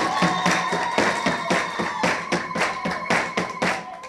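Audience clapping together in a steady rhythm, about four claps a second, over a steady high tone.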